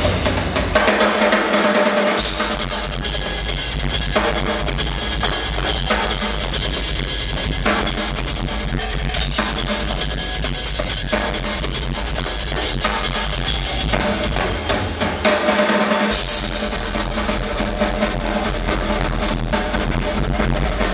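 Live rock drum solo on a large acoustic kit: fast snare and tom strokes with cymbals over bass drum. The bass drum drops out twice for a second or two, just after the start and about three-quarters of the way through.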